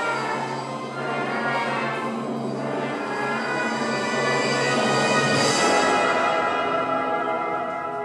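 Theatre pit orchestra playing an instrumental passage over a low held note, swelling to its loudest about three-quarters through, then easing off near the end.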